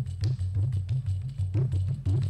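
Carnatic percussion ensemble playing: a morsing (jaw harp) twangs a loud rhythmic low drone while the mridangam and other percussion add quick sharp strokes.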